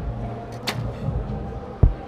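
A recurve bow shot: a sharp click as the string is released about two-thirds of a second in, then, about a second later, a short loud thud as the arrow strikes the target, the loudest sound here. A low steady venue hum runs underneath.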